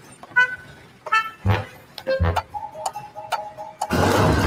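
Soundtrack of a wordless animated short: a string of about five short pitched hits, each with a soft low thump, spaced roughly half a second to a second apart. Near the end a steady tone holds for about a second.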